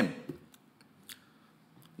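Quiet room tone with a few faint, sharp clicks. One click about a second in stands out a little above the rest.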